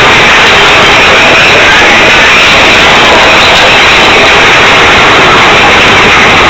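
Mine-train roller coaster running along its track: a steady, very loud rush of wind noise and rumble on board the moving train.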